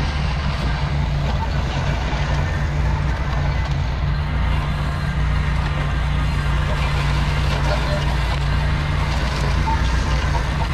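Ventrac tractor running steadily under load, its Tough Cut brush deck cutting through tall grass and brush: a constant engine drone under a continuous hiss of cut vegetation.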